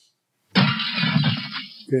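A breaking-glass crash sound effect, played with a slide animation. It starts suddenly about half a second in and dies away over about a second and a half.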